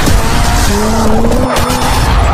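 Loud intro soundtrack: music mixed with a dense, noisy sound effect, with a tone that rises in pitch about two-thirds of a second in.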